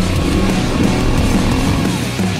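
Loud hard-rock background music with a steady bass line.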